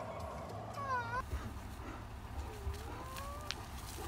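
A black bear bawling in distress while a grizzly mauls it. About a second in there is a short, high, meow-like cry that dips and rises in pitch, and a fainter rising whine follows later.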